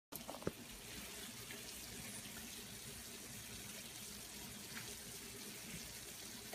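Shrimp, asparagus and garlic frying in oil in a pan: a steady, faint sizzle, with a sharp click about half a second in.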